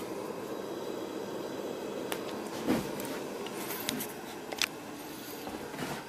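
Military Coleman 200A infrared lantern burning, its pressurized burner giving a steady hiss, with a few light clicks and a knock about three seconds in.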